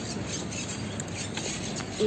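Steady outdoor street noise with rubbing and a few faint clicks from a handheld phone microphone being carried while walking.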